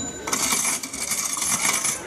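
Bright metallic jingling, a high shimmer that sets in about a third of a second in and keeps going.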